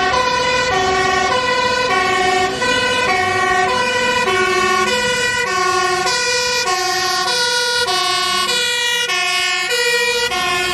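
Dutch fire brigade Volvo hook-arm truck's two-tone siren, alternating steadily between a high and a low note about every half second as the truck approaches.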